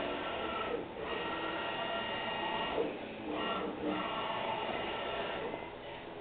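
Stepper motors of a CNC-converted BF20-style mill driving its axis ball screws, making a steady, printer-like whine during each move. The whine breaks off briefly between moves, about a second in and again around three to four seconds in.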